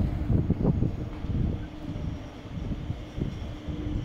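A RET metro train approaching the platform: a steady low hum over a rumble, with wind on the microphone.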